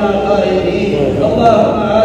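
A man's voice chanting an Arabic supplication in a drawn-out, sung cadence, without a break.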